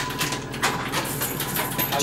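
Game-arcade noise around a rock-paper-scissors medal machine: a dense clatter of clicks and electronic sounds over a steady high tone.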